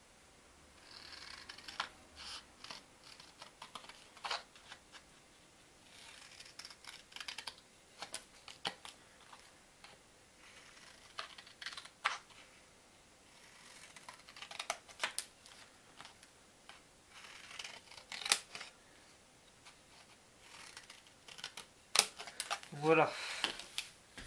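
Scissors snipping through thin pizza-box cardboard, in several short runs of cuts with pauses between.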